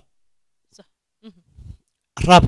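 Mostly a pause, with three faint, short voice sounds: one just under a second in, one falling in pitch a little later, and one near the end.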